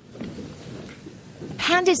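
A noisy rumble, like thunder, starts suddenly, and a woman starts speaking over it about a second and a half in.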